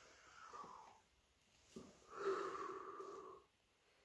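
A person's breathy exhale, a sigh or blowing-out breath lasting about a second and a half from about halfway through, after a softer falling breath near the start.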